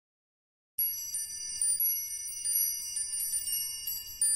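Silence, then about three quarters of a second in, a shimmer of high, overlapping bell-like chimes begins suddenly and rings on, struck again and again: the opening of a song's intro.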